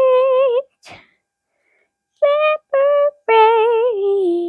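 A child's voice singing in a sing-song way: a held note, a pause of over a second, then three short notes, the last one longer and stepping down in pitch.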